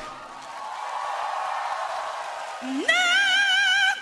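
Female pop singer's voice belting a long high note with wide vibrato, sliding up into it about three seconds in after the band has dropped away to a quieter hush.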